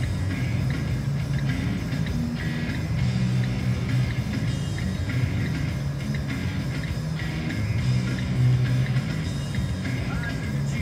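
Rock song with guitar and drums playing from a car radio, heard inside the car.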